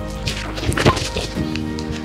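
A football struck hard once by a kicking foot: a single sharp thwack a little under a second in, over background music.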